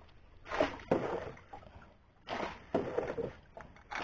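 A few soft splashes of river water slapping against the hull of a small wooden boat, short and irregular.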